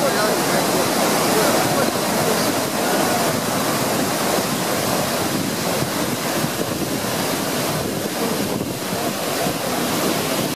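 Loud, steady rush of a broad, silt-laden river in flood pouring over a wide waterfall ledge, the water churning without a break, with wind buffeting the microphone.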